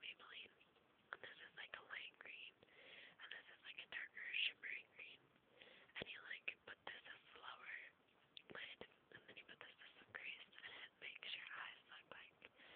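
A person whispering softly throughout, with a few faint clicks, the clearest about six seconds in.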